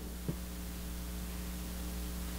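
A steady, low electrical mains hum with a faint hiss from the microphone and recording chain in a pause between spoken sentences, with one faint click about a quarter second in.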